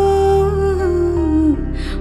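Nepali love song: a singer holds a long note over soft backing music, sliding down in pitch about a second and a half in as the phrase ends.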